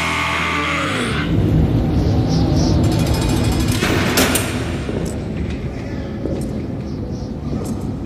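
A heavy metal band finishing a song live: the full band stops about a second in, and a low rumbling ring from the last notes fades away slowly, with a few faint clicks.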